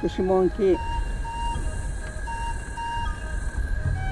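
Trailer soundtrack: a voice speaks a short phrase at the start, then soft music of held notes plays over a low rumble.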